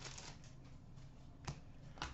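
Faint handling of a stack of Upper Deck SP Authentic hockey trading cards, flipped through by hand, with one sharp click about one and a half seconds in.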